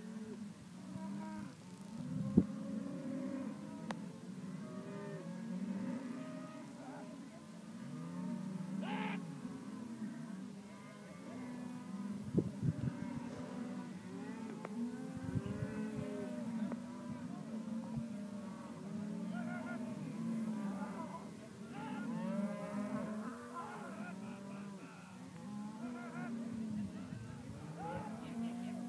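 A herd of cattle mooing and bawling without a break, many low calls overlapping one another. A few brief knocks stand out, the sharpest about two seconds in.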